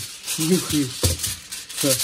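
A sheet of aluminium foil being pulled out and handled, crinkling and rustling, mostly in the second half.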